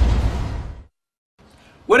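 The tail of a title-sequence sound effect, a noisy sound with a deep low end, fades out within the first second. A brief silence follows, then a man starts speaking near the end.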